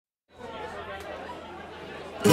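Faint murmur of many people chatting at once, starting about a third of a second in.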